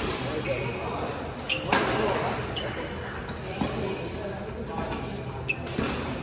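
Badminton rally on an indoor court: a few sharp racket-on-shuttlecock hits and short high squeaks of court shoes, echoing in a large hall, over the chatter of onlookers.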